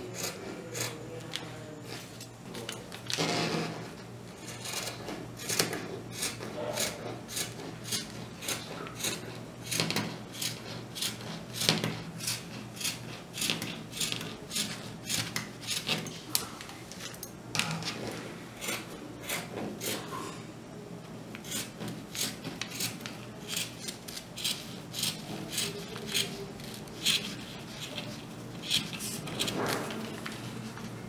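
Fabric scissors snipping slowly through several layers of folded cotton fabric, a steady run of short crunching snips about two a second, the blades working hard through the thick stack. A brief rustle comes about three seconds in.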